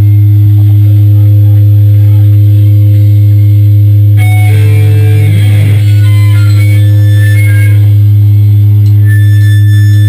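A loud, steady low drone from the band's amplifiers, with an electric guitar picking scattered single notes from about four seconds in, between songs.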